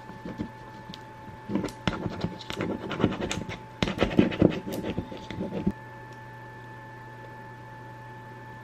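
A plastic card scraped firmly over transfer tape on a glass mason jar mug to press the vinyl down: a run of irregular rasping scratches and small clicks, heaviest in the middle, that stops suddenly about six seconds in.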